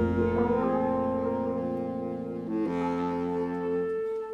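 Horn section of trumpet, tenor and baritone saxophones and trombone playing sustained chords together, changing chord about two and a half seconds in and ending on a long held chord. This closing chord is the phrase's resolution, which the players take to be B-flat.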